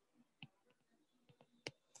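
Faint clicks of a stylus tapping on a tablet's glass screen while handwriting, the sharpest near the end, against near silence.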